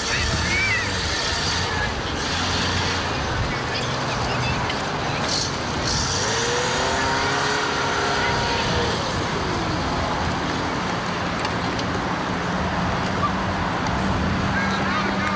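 Small car's engine running at low speed as it is driven through a course, its pitch rising and falling once about halfway through, with voices in the background.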